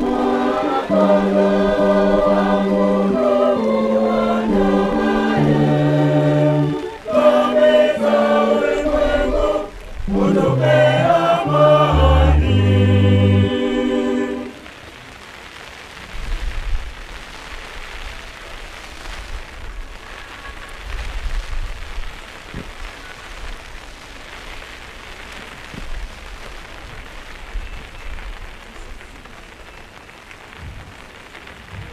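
A church choir singing a hymn with electronic keyboard accompaniment, the keyboard's bass stepping from note to note, the song ending about halfway through. After that only a faint steady hiss remains, with occasional low thuds.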